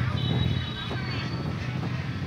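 Busy market ambience: vendors' and shoppers' voices in the background over a steady low hum.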